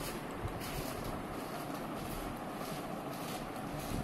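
A steady, even rushing noise with no distinct events: background room noise.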